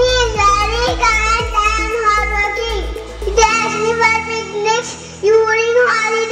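A young child singing a song into a microphone, over instrumental backing whose low sustained notes change about three and a half seconds in.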